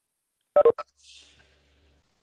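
Two quick telephone keypad tones in a row, then a fainter third, coming over the video-conference line.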